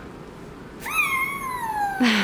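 One long meow, starting about a second in, rising briefly and then sliding down in pitch.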